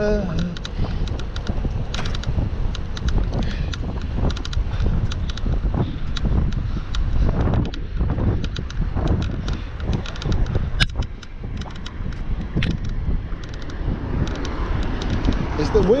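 Headwind buffeting the microphone of a bicycle rider's camera, a loud, continuous low rumble, with many light clicks scattered through it and one sharper click about eleven seconds in.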